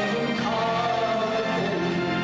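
A man singing into a handheld microphone over a karaoke backing track, holding long, wavering notes.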